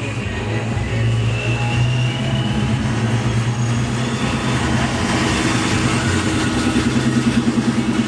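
A car engine running with a steady low rumble, a throbbing pulse in it growing stronger in the second half.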